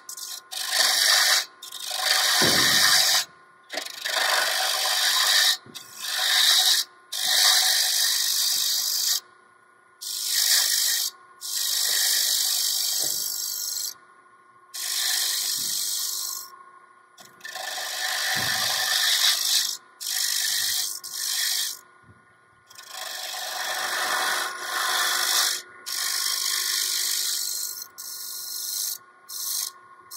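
Wood lathe with a hand-held turning tool cutting a spinning piece of wood, in about fifteen separate cuts of half a second to two seconds each, with short pauses between them. A faint steady hum from the running lathe lies underneath. The cuts are facing the bottom of a turned box flat.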